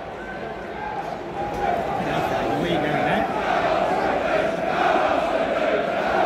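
Football crowd in the stands chanting together, a mass of voices that swells over the first couple of seconds and then holds steady.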